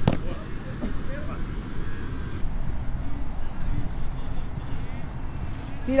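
A single sharp thud of a football being struck right at the start, over a steady low outdoor rumble with faint distant voices; a man's shout begins at the very end.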